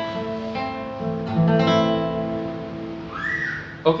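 Acoustic guitar chords struck a few times and left to ring out, slowly fading: the closing A minor chord of the song.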